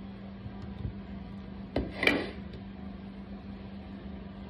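Kitchen handling sounds over a steady low hum: a single sharp knock about two seconds in, followed at once by a brief clatter, as banana slices go into a steel blender jar of yogurt and mango.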